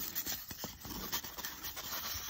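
Rigid foam board pieces being handled and slid against each other, a faint rubbing and scraping with a few light ticks.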